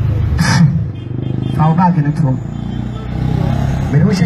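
People's voices, with a short burst of speech about two seconds in, over a steady low rumble.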